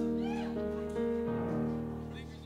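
Live band playing slow, held chords, with a few short high gliding sounds over them in the first half-second; the music fades toward the end.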